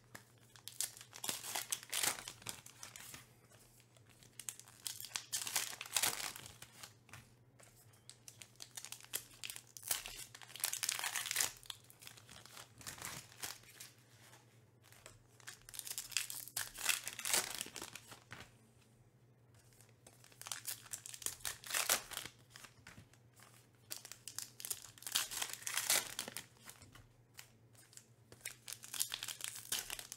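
Wrappers of Topps Heritage baseball card packs torn open and crinkled by hand, in bursts of crackling every few seconds.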